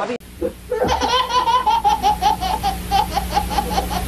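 A baby laughing hard in a long, even run of quick bursts, about four or five a second, starting about a second in.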